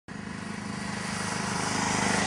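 A motor vehicle's engine running steadily, growing louder throughout.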